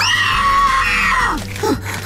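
A cartoon boy's voice screaming in terror, one long high scream that lasts about a second and a half and drops in pitch as it ends, over background music.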